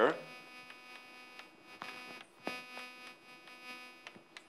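Chalk tapping and scraping on a blackboard as words are written, a few short taps standing out, over a faint steady electrical hum.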